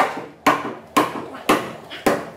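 Hammering on a solid rosewood sập platform frame being knocked together during assembly: four sharp blows about half a second apart, each ringing briefly in the wood.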